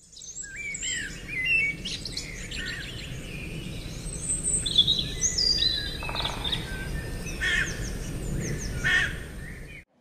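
Birdsong ambience: several birds chirping and whistling over a low steady rumble. It cuts off suddenly near the end.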